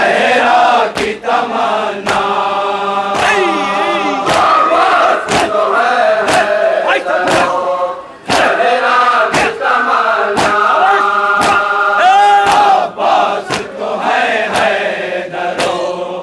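A crowd of men chanting a nauha (mourning lament) together in loud unison. Sharp strikes of matam, palms beating on chests, mark the beat about once a second.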